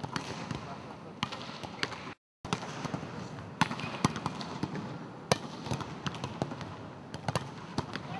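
Volleyballs being hit and bouncing on an indoor court during practice: irregular sharp smacks over a steady hum of background voices, with a brief gap of silence about two seconds in.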